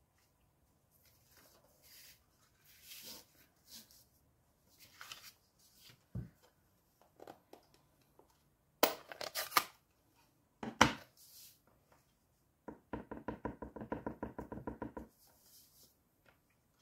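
Paper cardstock rustling and sliding on a craft mat, then sharp plastic clicks and snaps as a flip-lid stamp ink pad is handled and opened, the loudest midway. Near the end, a quick run of light even taps, about eight to ten a second, as an acrylic-block clear stamp is dabbed onto the ink pad.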